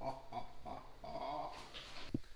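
A dog whining in a few short, high, wavering cries, with a longer one a little after a second in.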